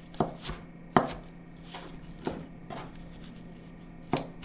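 Chef's knife chopping a stack of perilla leaves on a cutting board: about six separate knife strikes, unevenly spaced.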